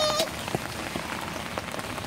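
Steady rain falling on wet pavement and yard, with a few faint short taps. A brief high-pitched child's vocal sound is heard right at the start.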